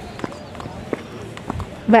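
Low outdoor background of faint, distant voices with a few light clicks. A woman's voice starts up close right at the end.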